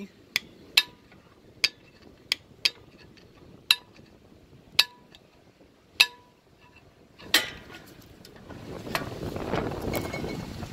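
Trailer drum brake's star-wheel adjuster being turned with a screwdriver to back off the brake shoes: sharp metallic clicks, about nine of them at uneven gaps a second or so apart. A rushing noise builds up near the end.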